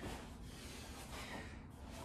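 Faint breathing of a man catching his breath after a set of bodyweight side-plank reps.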